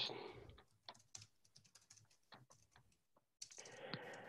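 Faint typing on a computer keyboard: an irregular run of soft key clicks.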